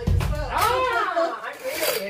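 A voice over background music, with a brief hiss near the end.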